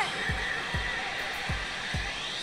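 Pachinko machine's reach-sequence music with a steady low beat about two to three times a second, over a steady rushing noise.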